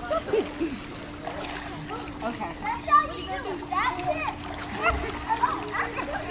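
Swimming-pool water splashing as a person moves about in it, with children's voices close by.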